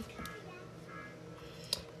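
Faint music from a television playing in the background, with a single sharp tap of a kitchen knife on a plastic cutting board near the end.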